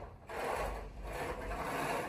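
Curtains being drawn open: their hooks slide and scrape along the curtain rail in one long pull.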